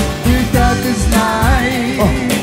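Live band playing a dance song: a melodic lead line over a steady drum beat.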